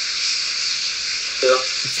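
A steady hiss of background noise on the recording, even and unbroken, with one short spoken word about one and a half seconds in.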